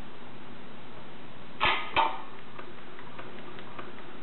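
A dog barking twice, two short barks about a third of a second apart, over steady room noise.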